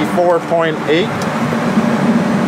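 Steady low drone inside the cab of a self-propelled fertilizer spreader, its engine running at light load, with a man's voice speaking briefly in the first second.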